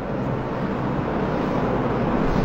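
Steady background noise, an even hiss with a faint low hum, growing slightly louder.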